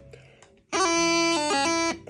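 Bagpipe practice chanter playing the tune's pickup notes: a held note with quick grace-note flicks in pitch, starting about two-thirds of a second in and stopping just before the end.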